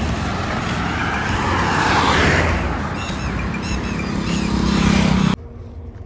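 Roadside traffic noise with a steady low engine hum beneath it. A vehicle passes about two seconds in. The sound cuts off abruptly near the end.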